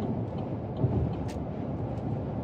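Steady road and engine noise inside the cab of a vehicle driving at highway speed, with a small click a little before the middle.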